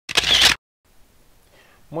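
A short, loud burst of noise lasting about half a second right at the start, an edited-in sound effect, followed by faint room tone; a man's voice begins at the very end.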